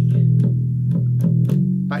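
Electric bass guitar playing sustained single notes of a slow E-minor riff, settling on an E, with a few note changes.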